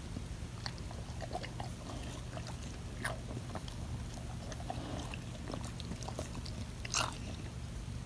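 A dog chewing and licking quietly: scattered faint clicks and smacks, a little louder about three seconds in and again near seven seconds, over a low steady hum.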